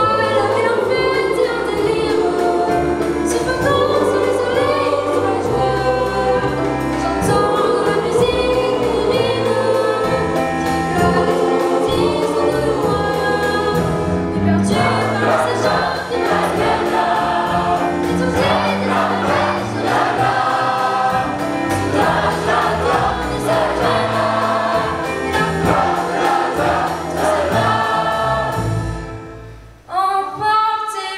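Large children's and teenagers' choir singing in unison and parts, accompanied by instruments with a steady drum beat. The music dies away near the end.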